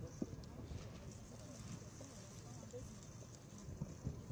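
Faint outdoor ambience: a low murmur of voices, with one sharp click about a quarter second in and a few knocks near the end.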